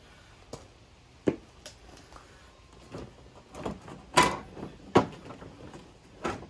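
Irregular hard plastic clicks and knocks as a loosened headlight assembly and its bracket are worked free of a car's front end, the loudest about a second in and again around four and five seconds in.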